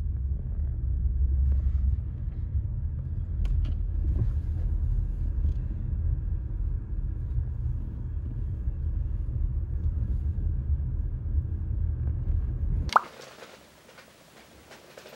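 Low, steady rumble of a car driving, heard from inside the moving car, with a faint click or two along the way. It cuts off suddenly near the end, giving way to quiet room tone.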